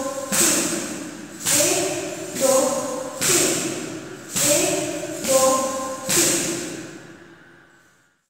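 Kathak ghungroo (ankle bells) jingling with the dancer's footwork during spins, about one stamp a second, each jingle ringing on and then dying away. The sound fades out in the last second as the spins end.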